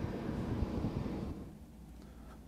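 Wind rumbling on an outdoor microphone, with a dull low thump about half a second in. The noise dies down about a second and a half in.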